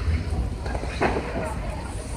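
Large fire burning, heard as a steady low rumble, with one short sharp burst about a second in and faint voices behind it.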